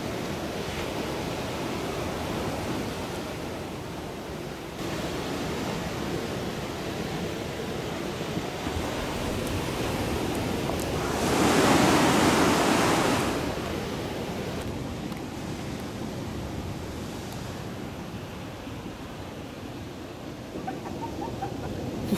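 Ocean surf washing in over rocks as a steady wash, with one wave breaking louder near the middle.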